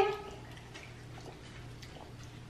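Quiet room tone with a faint steady hum and a few soft, faint clicks, after the tail of a woman's word at the very start.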